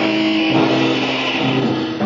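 Punk rock recording: distorted electric guitar chords held and ringing, changing about half a second in, as the song winds toward its end.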